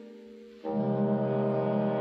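Concert wind ensemble holding sustained chords: a soft chord fades away, then about two-thirds of a second in a loud, low brass chord enters suddenly and is held steadily.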